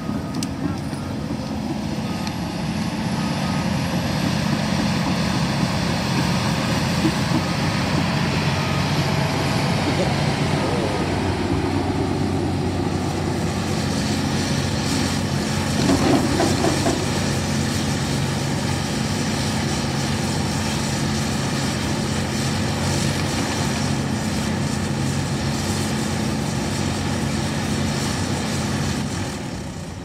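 Diesel engine of a Cat 568 tracked forest machine running steadily close by. It grows louder over the first few seconds and has a brief louder surge about halfway through.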